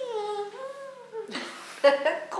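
A child's voice humming one long, wavering note that slides slowly up and down in pitch, followed by a short breathy rush of noise near the end.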